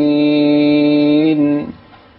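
A chanting voice holds one long, steady note, then breaks off near the end.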